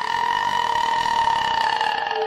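Dark horror background music: one loud, held, rough-edged tone with overtones that slides up a little, then holds steady.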